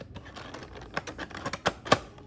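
Top flap of a cardboard Funko Pop box being pried open by hand: a series of light clicks and scrapes, with a sharper snap near the end.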